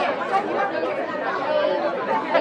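Chatter of many voices talking over one another, typical of press photographers calling out to someone posing for them.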